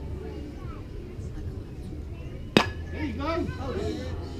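Youth baseball bat striking a pitched ball: one sharp crack about two and a half seconds in, with a brief ring, followed by spectators shouting.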